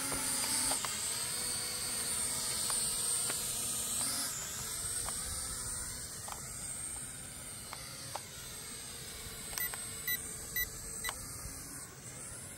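K3 E99 toy quadcopter's small electric motors and propellers whining in flight, the pitch rising and falling as it manoeuvres, getting quieter as it flies away.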